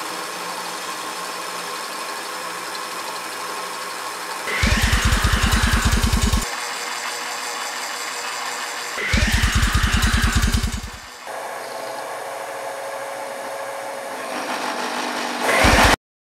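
Homemade milling machine running steadily, then twice breaking into a loud, fast-pulsing chatter for about two seconds as the cutter bites into steel. A third cut starts near the end. The chatter comes from vibration in the machine's base and post.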